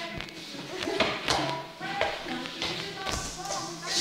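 Several thuds and taps of a ball and running feet on a floor during an indoor dodgeball game, with music and voices in the background.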